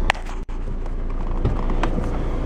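2.0 common-rail TDI diesel engine idling, heard from inside the van's cabin as a steady low rumble, with a sharp click just after the start.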